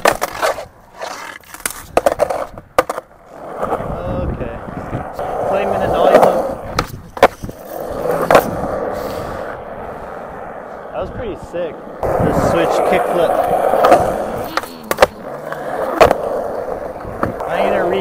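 Skateboard wheels rolling on smooth concrete, broken by sharp clacks of the board: tail pops, landings and the board hitting the ground on flip-trick attempts. There is a cluster of quick clacks in the first few seconds, and more near the middle and toward the end.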